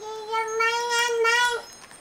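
A high-pitched voice holds one long, steady note for about a second and a half, wavering slightly near the end.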